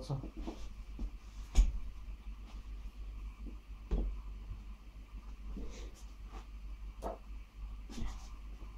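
Scattered knocks and clicks of tools being handled off to the side on a workbench. Three stand out: one about a second and a half in (the loudest), one at about four seconds, and one near seven seconds.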